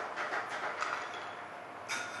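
Ice cubes clinking against a glass as a bar spoon stirs a cocktail: a run of light, irregular clicks, with one sharper click near the end.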